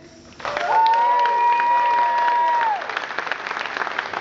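Concert audience applauding and cheering as a live rock song ends, breaking out about half a second in. One voice holds a long high call for about two seconds over the clapping, and the applause eases slightly near the end.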